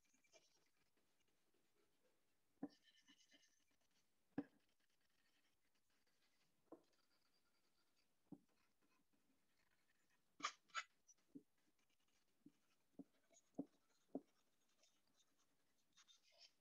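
Near silence with the faint sounds of a pencil drawing being erased on paper: soft rubbing now and then and about a dozen light, scattered ticks.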